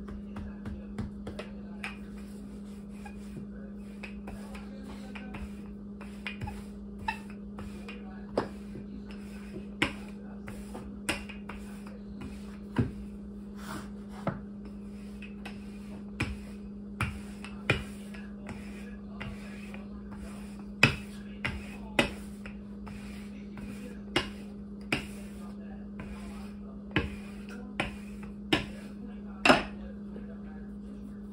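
Wooden rolling pin knocking and clacking against a floured wooden table while pie dough is rolled out thin, in irregular sharp knocks about a second apart that get louder in the second half. A steady low hum runs underneath.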